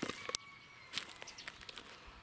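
A few light, crisp steps or crunches on larch wood-chip mulch, most of them in the first half second. A faint thin high whistle is held for about a second over a quiet outdoor background.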